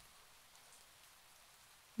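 Faint, steady rain ambience: a soft, even hiss with no distinct drops or thunder.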